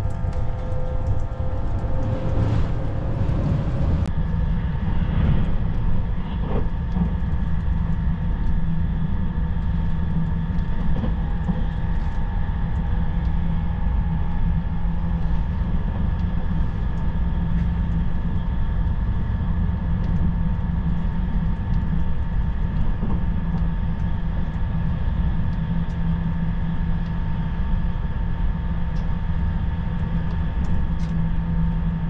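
Steady running noise of a 651 series limited-express electric train heard from inside the passenger car: a continuous low rumble of wheels on rail with a faint steady whine over it.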